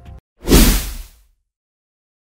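A whoosh sound effect with a deep low end for a logo transition, swelling about half a second in and fading out within a second.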